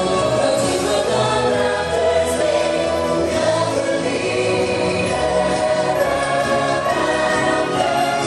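Parade music: a choir singing held notes over instrumental backing, steady and continuous.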